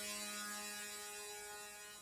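A steady low buzzing tone with even overtones, slowly fading out.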